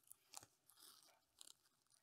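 Near silence broken by a few faint, brief crinkles and rustles, the clearest about half a second in: hands lifting a canna rhizome out of loose peat moss in a plastic bag.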